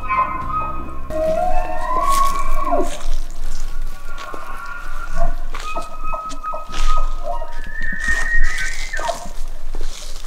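Bull elk bugling: high whistling calls that rise and then drop away steeply, heard twice, over background music.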